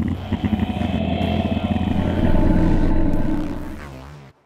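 A deep, drawn-out monster roar sound effect that swells in loudness over a few seconds and fades near the end.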